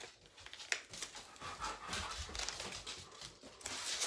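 A dog panting close by, unevenly, with a single sharp click a little under a second in.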